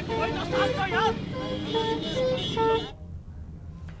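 Vehicle horns honking in short repeated beeps at two alternating pitches, about two or three a second, over the voices of a crowd at a roadside. It all cuts off suddenly about three seconds in, leaving only a faint low hum.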